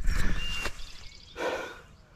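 Rustling and handling noise of clothing close to the microphone as the camera is moved, fading in the first half second, then a soft breath out about halfway through.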